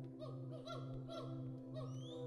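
Western hoolock gibbon song: four short, hooting pitched calls about half a second apart, over a soft, steady ambient music drone.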